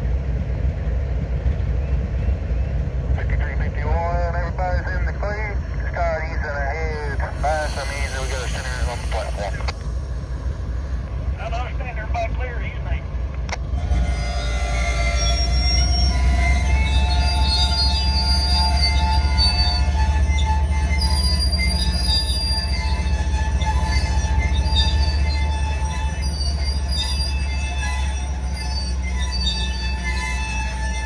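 Low, steady rumble of a slow-moving freight train, with a heavily loaded transformer car rolling by. About halfway in, the rumble grows louder and several high, steady tones join in over it.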